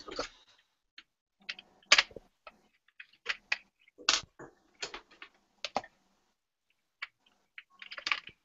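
Wooden colored pencils clicking and knocking as they are picked up and set down on the desk. The light clicks and taps come irregularly, about one or two a second, some louder than others.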